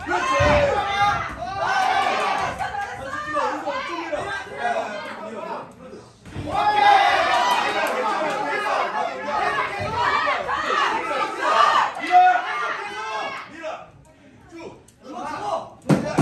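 Several voices talking and shouting over one another, as from coaches and onlookers during a kickboxing bout, with a few dull thuds of kicks or punches landing on pads and gloves.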